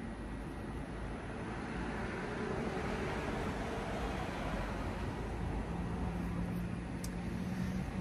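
Steady rush of distant road traffic, swelling slightly midway, with a low steady hum joining near the end.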